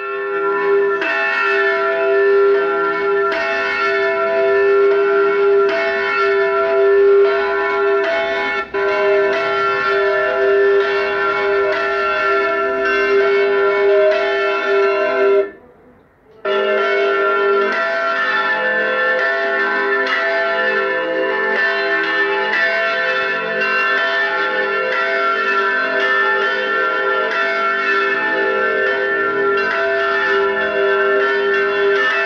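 Several swinging church bells in a stone belfry ringing together in a continuous peal, broken off briefly about halfway through.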